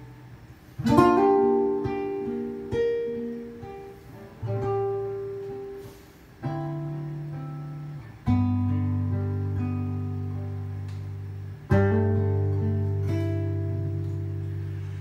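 Acoustic guitar playing a slow song introduction: chords picked and left to ring, a new one every one to three seconds, each fading before the next.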